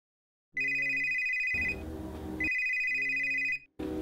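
A mobile phone ringing with an old-style trilling telephone-bell ringtone. There are two rings, each a little over a second long with a short pause between them, and the first starts about half a second in.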